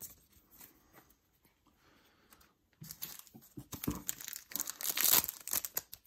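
Foil Yu-Gi-Oh! booster pack wrapper crinkling and tearing open. It starts about three seconds in, after a nearly quiet start with a few faint clicks, and is loudest near the end.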